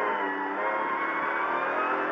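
Ford Fiesta R2T rally car's turbocharged three-cylinder engine pulling in second gear, heard from inside the cabin, its pitch rising steadily as the car accelerates.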